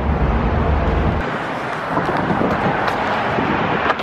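Outdoor street noise: a steady rush of passing road traffic, with a low wind rumble on the microphone that drops away about a second in.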